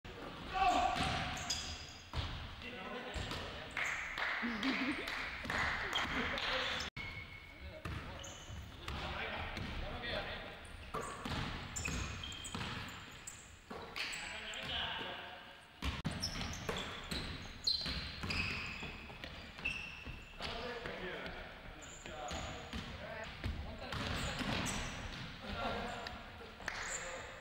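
Basketballs bouncing and being dribbled on a hardwood gym floor, with the indistinct voices and calls of players. The sound cuts out suddenly once, about seven seconds in.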